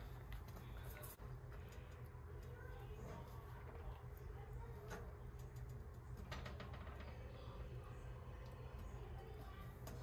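Faint stirring of thick marinara sauce in a pot with a slotted spatula, with a few light clicks and knocks of the spatula against the pot over a steady low hum.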